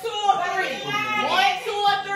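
Speech only: people talking, with no other sound standing out.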